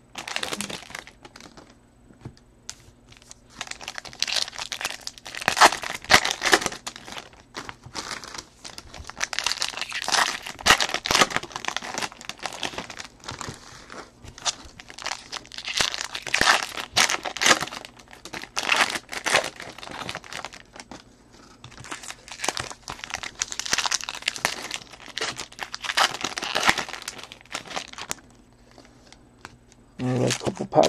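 Foil trading-card pack wrappers crinkling and tearing as packs are handled and opened, in irregular bursts with short pauses between them.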